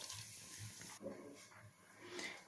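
Faint sizzling of moong dal frying in ghee in a pressure cooker, fading about a second in.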